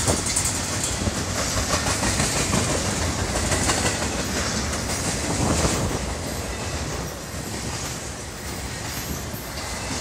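CSX intermodal freight train's flatcars, loaded with highway trailers, rolling past close by: a steady rumble of steel wheels on rail with a rapid clickety-clack over the rail joints. It eases slightly about six seconds in.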